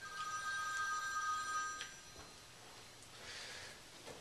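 A faint electronic ring: two steady high tones sounding together for about two seconds, then cutting off, with a light click just before they stop.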